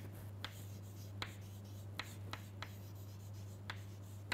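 Chalk writing on a chalkboard: a string of short, sharp taps and scratches as the letters are formed, irregularly spaced, over a steady low hum.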